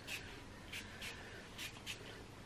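A pump spray bottle of floral hair mist spritzing onto hair, about five short, faint hisses in quick succession.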